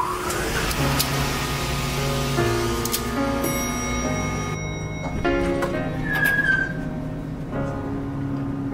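Background score with sustained chords over held bass notes. A rising whoosh opens it, and a rushing noise runs under the first three seconds. A short high whistling note sounds about six seconds in.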